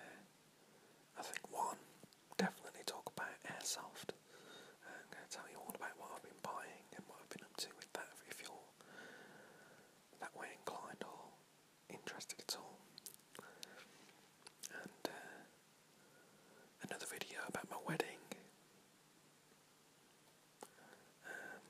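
A man whispering, speaking in short phrases with pauses.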